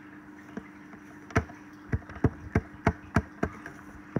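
A microscope being handled and adjusted: light clicks and knocks, about eight at irregular intervals, most of them in the second half, over a steady low hum.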